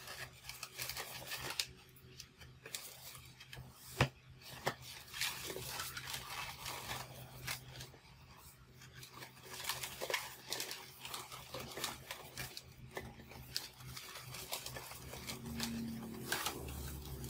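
Long latex modelling balloons squeaking and rubbing against each other as they are twisted and wrapped together, in an irregular run of short scratchy squeaks and crackles. A single sharp snap about four seconds in is the loudest sound.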